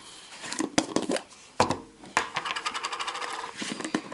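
Plastic screw-top lid of a tub being twisted open by hand. A few scattered clicks and one sharper click come first, then from about halfway a fast, even run of tiny clicks as the lid turns on its threads.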